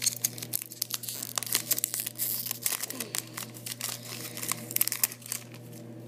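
Foil wrapper of an Upper Deck SP Authentic hockey card pack crinkling in the hands and being torn open, a dense run of sharp crackles and rips.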